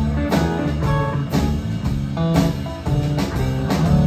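Live rock band playing an instrumental passage between vocal lines: electric guitar notes over bass guitar and a drum kit keeping a steady beat.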